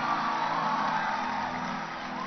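Soft background music of sustained, held chords, with faint wavering voices from the crowd over it.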